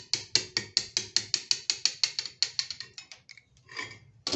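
Rapid, even light taps of metal on metal, about six a second, as a small steel rod is driven in to push out a wooden peg left inside a cast resin piece; the taps thin out and stop about three seconds in, followed by a brief scrape.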